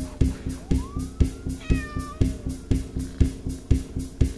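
Orchestral film score with a steady pulsing beat of about three hits a second. Over it a cat meows once, a long call rising in pitch from about half a second in and fading by the middle.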